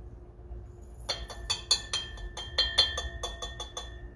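A small metal spoon tapped against a glass beaker: a rapid, uneven run of ringing clinks starting about a second in. It is knocking a thick diesel fuel additive that won't pour off the spoon into the beaker.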